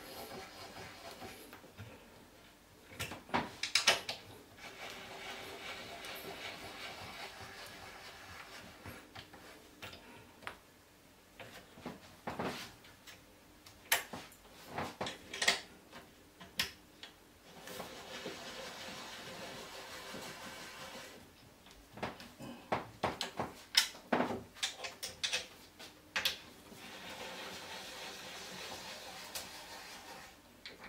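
Wooden panels and fittings of a flat-pack shelving unit being handled and fitted together: scattered knocks and clicks, with several stretches of steady rubbing noise a few seconds long between them.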